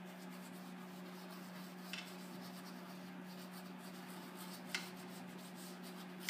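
Faint scratchy strokes of a paintbrush working paint onto a canvas, with two small sharp ticks, about two seconds in and near the five-second mark, over a steady low hum.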